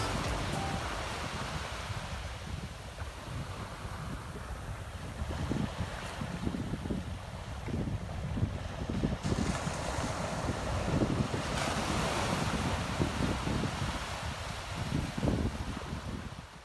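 Small waves breaking and washing up a flat sandy beach, the surf swelling louder in the middle and easing near the end. Wind gusts buffet the microphone with a low rumble.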